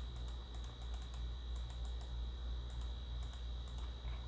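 Faint, irregular clicking from a computer's mouse and keyboard in use, over a steady low electrical hum and a thin steady high whine.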